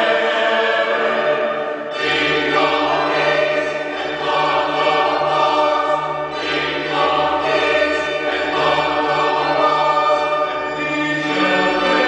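Choir singing sustained chords in phrases of about two seconds, with a low bass part coming in about two seconds in.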